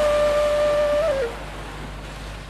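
Flute holding one long, steady note, which ends in a short falling turn a little over a second in. Then there is a pause with faint hiss before the melody goes on.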